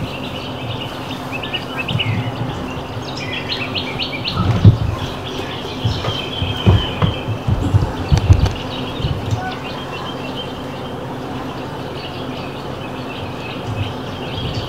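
Birds chirping over a steady low hum, with a few low bumps about halfway through.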